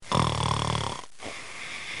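A cartoon character snoring: one snore about a second long, followed by a quieter breath out.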